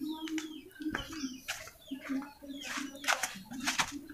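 A bird cooing softly and repeatedly in the background, broken by several sharp light clicks and knocks.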